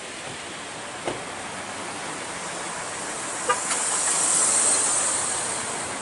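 A vehicle passing on the street: tyre and road noise swells to a peak about four to five seconds in, then fades.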